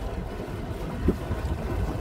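Low, steady rumble of a boat under way on the river, with wind buffeting the microphone.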